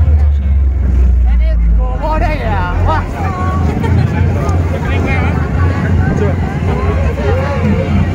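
Loud street-parade sound system playing a DJ dance remix with heavy bass, strongest in the first two seconds. From about two seconds in, a crowd's voices and chatter rise over the music.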